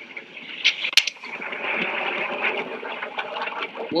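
Steady rushing noise from the soundtrack of a handheld video shot on a ski slope, the kind that wind on the microphone makes. It swells about a second in, just after a sharp click.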